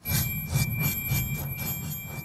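Playback of a layered sound-design mix: recorded glass panes and metal scraping, whooshes and a synthesizer shimmer, blended into one metallic, glimmering texture. A steady high ringing tone runs through it over quick flickering ticks and a low pulsing rumble.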